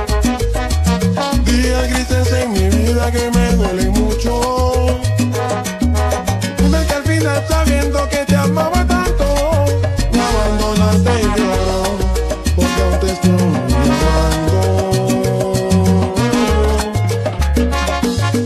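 Ecuadorian salsa music in an instrumental passage, with no singing, over a bass line stepping from note to note.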